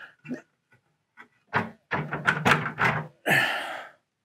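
Tempered-glass front panel of an InWin 925 aluminium PC case being unfastened and lifted off: a few light ticks, then a cluster of knocks and thunks as the panel is handled, and a short hissing rush near the end.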